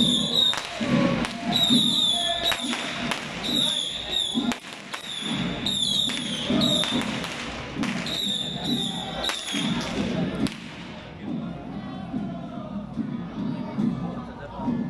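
Procession music: steady low beats with short, shrill, high-pitched whistle-like notes repeated about once a second, stopping about ten seconds in, after which only crowd noise remains.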